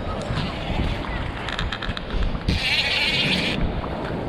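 Large saltwater spinning reel on a rod fighting a hooked sailfish: brief clicking, then a loud buzz lasting about a second just past halfway, with steady wind and surf noise throughout.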